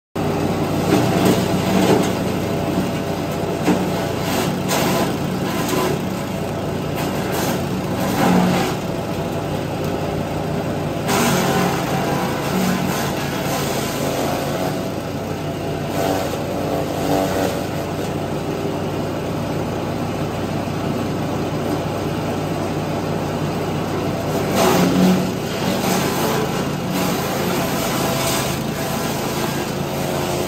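Takyo TK65 petrol-engine garden shredder running steadily while it chops fresh leafy branches. Louder crackling surges come as branches go into the blades, most clearly near the start, about 8 seconds in and again about 25 seconds in.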